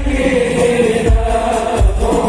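Sholawat, an Islamic devotional song, sung by voices to a deep drum that strikes about once a second.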